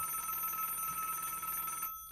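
A steady telephone tone of several pitches, lasting about two seconds and cutting off suddenly, as a call-in caller's line is put through to air.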